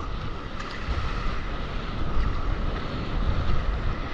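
Wind buffeting the action camera's microphone over sea water rushing and splashing around a stand-up paddleboard as it moves through breaking whitewater, a steady noisy rumble throughout.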